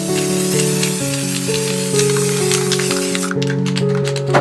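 Aerosol spray paint can hissing in one long continuous spray that cuts off near the end, over background music with held notes.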